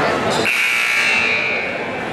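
Gymnasium scoreboard buzzer sounding once: a steady high tone that starts about half a second in and lasts a little over a second, over crowd chatter. It marks the end of a timeout, calling the teams back onto the court.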